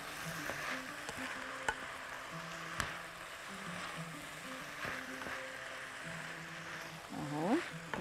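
Diced vegetables sizzling in oil in a frying pan as they are stirred with a wooden spatula, with a couple of sharp clicks from the spatula on the pan. Quiet background music plays underneath.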